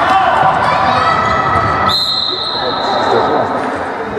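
Indoor basketball in a reverberant gym: a ball bouncing on the wooden court amid voices. About two seconds in, a long, steady, high referee's whistle blows and play stops.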